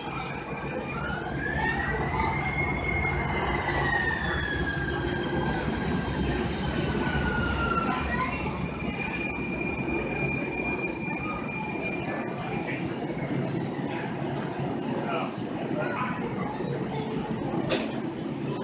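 Siemens S200 light rail train arriving in an underground station, with a steady low rumble throughout. Its electric drive gives a high whine that rises briefly and then falls steadily in pitch as the train slows. After that the whine holds a steady higher tone for several seconds before fading. A single sharp click comes near the end.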